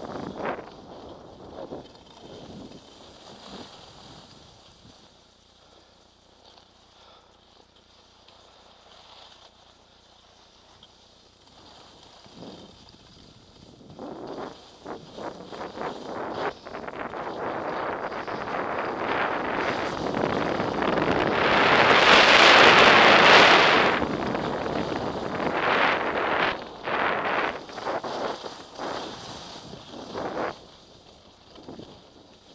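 Wind rushing over the microphone of a body-worn camera and skis sliding and scraping on packed, tracked snow. It is low for several seconds, then builds steadily to its loudest a little past the middle and comes and goes in swells near the end.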